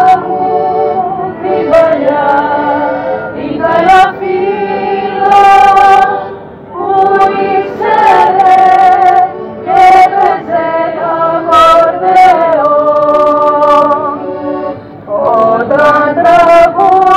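A woman singing through a megaphone, accompanied by violins, in long held notes with short breaks between phrases.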